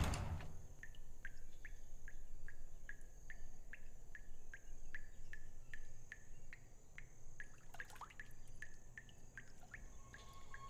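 Water dripping steadily into a filled bathtub, about three soft plinks a second, with a brief swish near eight seconds.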